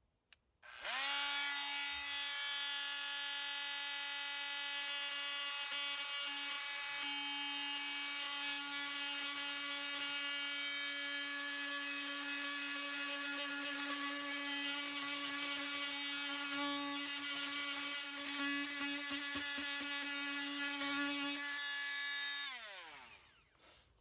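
Bosch oscillating multi-tool plunge-cutting through wooden brick mold, its blade worked side to side in small strokes. A steady high-pitched buzz starts about a second in, holds an even pitch while cutting, and winds down as the tool is switched off near the end.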